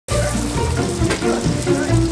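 Oil sizzling in a commercial deep fryer as flat pieces of BeaverTail pastry dough fry, mixed with background music that has a steady bass line.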